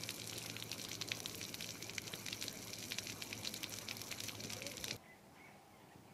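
Water running and splashing from an outdoor tap, a steady hiss that cuts off suddenly about five seconds in.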